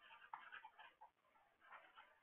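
Near silence with faint, irregular scratching from a stylus writing on a tablet, pausing briefly in the middle.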